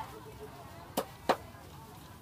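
Cleaver chopping on a wooden cutting board: two sharp strokes about a third of a second apart.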